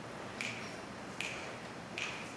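Sharp snaps at a slow, steady tempo, one about every 0.8 seconds, keeping time before the band starts playing.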